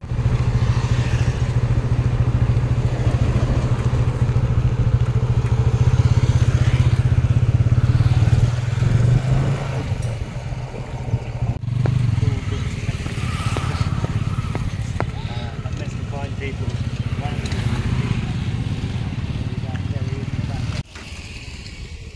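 Motorcycle engine running steadily close by, with passing road traffic; the sound drops off suddenly about a second before the end.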